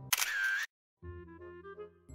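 Camera shutter sound effect, about half a second long, then a moment of silence, then background music comes back in quietly.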